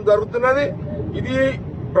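A man speaking into a cluster of press microphones, pausing briefly about a second in, over a steady low background rumble.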